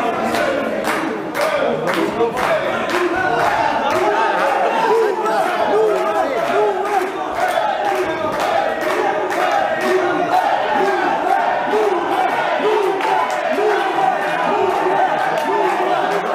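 Many spectators' voices shouting and calling out at once, overlapping throughout, with a few sharp knocks in the first second or two.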